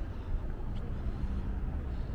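Outdoor city ambience: a steady low rumble, with a faint hum for about a second midway.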